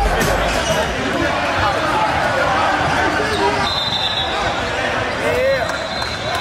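Live sound of an indoor basketball game: a ball bouncing on the hardwood amid players' and spectators' voices in a large gym.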